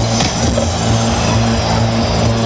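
Loud electronic dance music over a big outdoor festival sound system, here a stretch held on a long, steady bass note with few drum hits.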